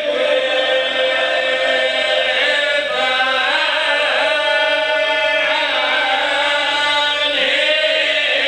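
Men chanting a lament together through a microphone and loudspeakers, in long held notes that waver in pitch.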